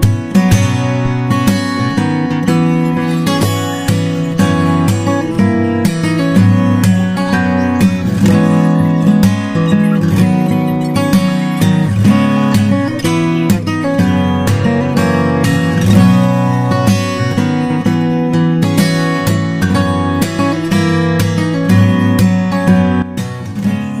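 Background music: a solo acoustic guitar played fingerstyle, with a steady stream of plucked notes.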